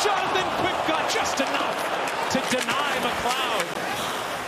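Ice hockey play heard over arena crowd noise: repeated sharp clacks of sticks, puck and bodies against the boards, with a man's voice over them.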